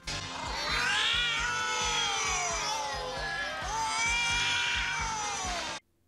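Electronic cartoon music with wailing tones that glide up and down over a fast, steady beat, cutting off abruptly just before the end.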